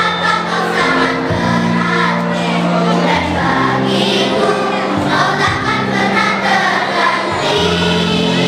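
A large children's choir of fifth-graders singing together over instrumental backing with long held low notes.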